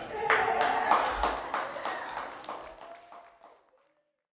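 Audience clapping, with sharp separate claps about three a second, fading away near the end.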